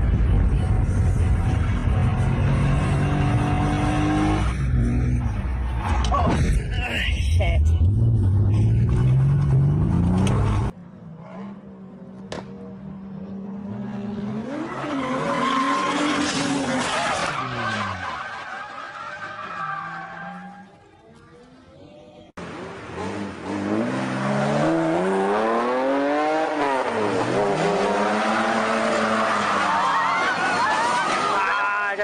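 Drifting cars, in three short clips one after another: engines revving hard with the pitch rising and falling as the throttle is worked, and tyres squealing as they slide. The first clip is loudest, with a deep engine note climbing near its end; the last has quick repeated revs up and down.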